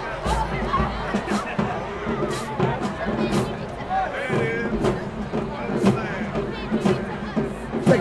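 High school marching band playing on the field, with sharp hits standing out every half second to a second, over crowd voices and chatter.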